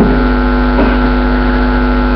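Steady electrical mains hum in the microphone and sound system, a loud, unchanging buzz made of several fixed tones, heard plainly while the speaker pauses.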